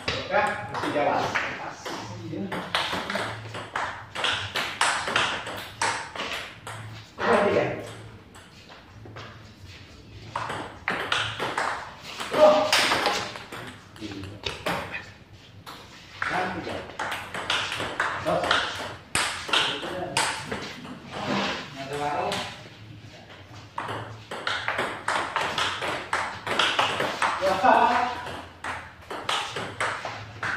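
Table tennis rallies: a ping-pong ball clicking off rubber paddles and bouncing on the table in quick exchanges, with short pauses between points.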